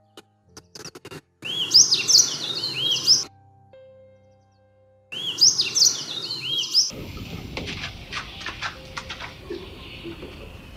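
Songbirds chirping in quick, repeated, arching high calls, in two bursts of about two seconds with a short silence between. After that comes a steady outdoor background with light clicks and knocks.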